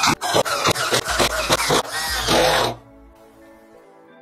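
Electric screwdriver driving a screw that fastens a power transistor to an aluminium heatsink, a rough burst of motor noise and rattling clicks that stops about three seconds in. Soft background music plays underneath.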